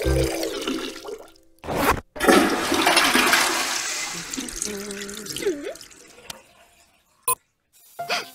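Toilet flushing: a loud rush of water starts about two seconds in and fades away over the next several seconds. A short, sharp click comes near the end.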